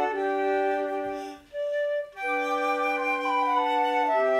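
Four layered flutes playing sustained notes in harmony, a flute quartet recorded one part at a time. A little after a second in, the chord breaks off and a single flute sounds one short note alone, then all four parts come back in together.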